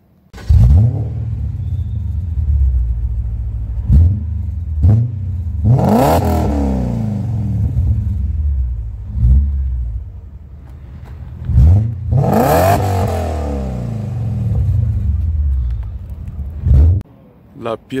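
BMW E39 M5's S62 5-litre V8 through a Supersprint X-pipe exhaust, starting suddenly about half a second in and then idling with a series of throttle blips. Two of the blips are longer revs that climb and fall back. The sound cuts off abruptly near the end.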